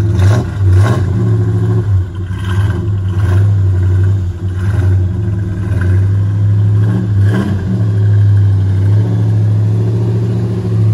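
1968 Dodge Charger R/T's V8 running cold shortly after a cold start, idling steadily with several short throttle blips as the car pulls slowly away.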